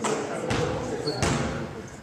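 Three dull thuds over about a second, spaced irregularly, over indistinct background voices.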